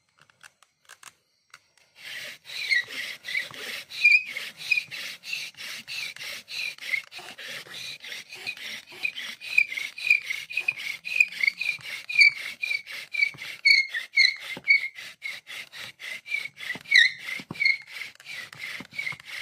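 Bow drill in use: a wooden spindle spun back and forth in a wooden fireboard by a bow, a rapid, even rubbing with a squeak on each stroke, starting about two seconds in. The friction is building heat, and the hole is smoking by the end.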